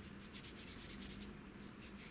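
Faint rubbing of hands rolling a piece of soft flower and modelling paste into a tapered sausage, heard as a run of soft repeated strokes.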